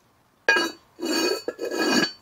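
Gzhel porcelain lid clinking down onto its porcelain dish, then scraping around on the rim twice with a ringing, grinding sound.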